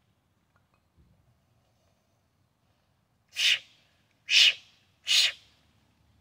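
Three sharp, forceful breaths about a second apart, a lifter bracing for a heavy one-arm kettlebell press.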